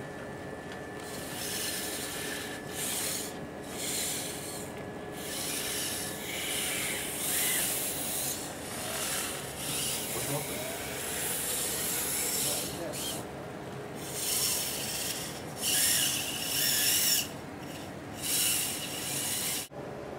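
Tendon-driven actuators of a musculoskeletal humanoid robot (Kojiro) working as it moves its spine and arm: a run of high, noisy whirring bursts, each lasting a second or so, with short gaps between.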